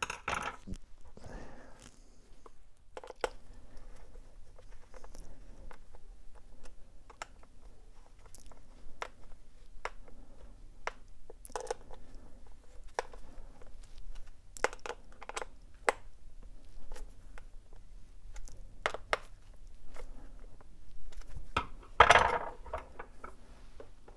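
Small, irregular clicks and ticks of a hex driver turning the bolts of a three-bolt road cleat on a cycling shoe's sole, with handling of the shoe and tools. A louder knock near the end.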